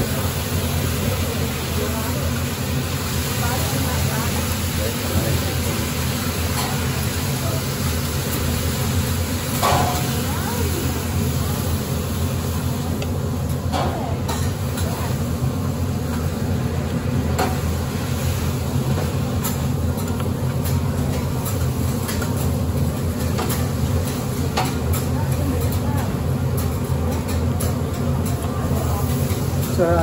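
Food sizzling on a teppanyaki hotplate over a steady low hum. From about halfway through, metal spatulas tap and scrape rapidly on the griddle as the chef chops.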